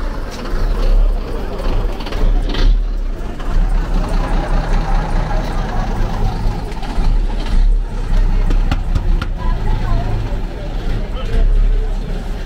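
Low, steady rumble of a large vehicle's engine running close by, under street noise and voices.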